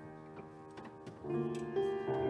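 Piano playing slow, quiet music. A held chord dies away, then new notes come in just over a second in, with a few light clicks in between.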